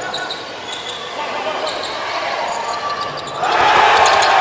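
Basketball game sound in an arena: a ball bouncing on the hardwood court over a steady crowd noise, which swells sharply near the end.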